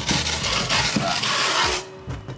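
Wooden peel scraping across a baking stone as it is pushed under baked ciabatta loaves: a continuous, rough scrape that stops sharply near the end.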